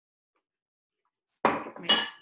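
Silence, then about a second and a half in a sharp metallic clatter followed by a ringing clink as metal kitchen tongs are picked up.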